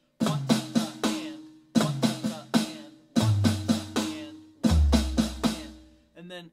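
Electronic drum kit playing a 16th-note-triplet flam fill, sticking RLRRKK: a flam, two hand strokes, then two bass drum kicks. It is played as four quick groups about a second and a half apart. The third group sounds lower in pitch and the fourth lowest.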